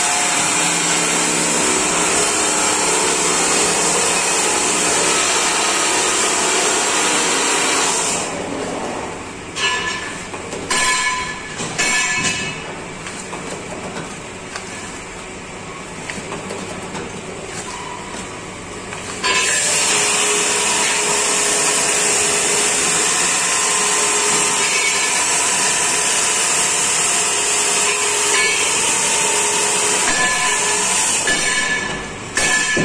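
A paper dona (bowl) making machine running: a steady, loud mechanical noise with a strong hiss. The noise drops away for about ten seconds in the middle, with a few short knocks, then comes back at full level.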